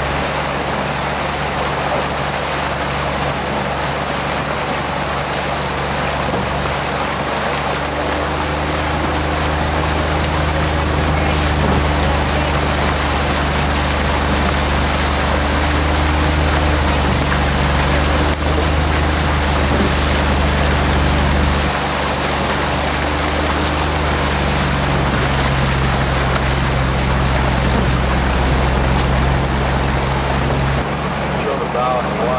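A boat's outboard motor running steadily, its pitch shifting slightly a few times as the throttle changes, with a constant rush of wind and water.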